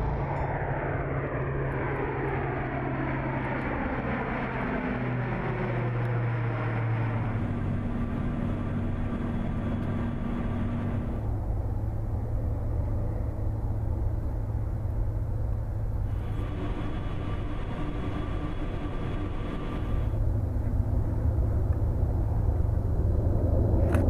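Airbus A400M Atlas four-engine turboprop flying past, its propeller drone falling in pitch over the first several seconds as it goes by, then a steady low propeller hum.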